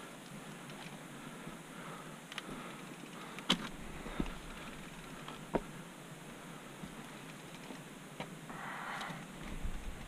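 A mountain bike moving slowly over logs and mud, with a few scattered faint clicks and knocks and a short breathy noise near the end.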